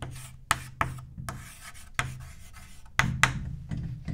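Chalk writing on a blackboard: scratchy strokes broken by several sharp taps of the chalk against the board.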